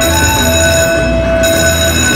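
Buffalo Gold slot machine's award sound for five extra free games won in the bonus: a held chord of steady tones over a low, pulsing rumble.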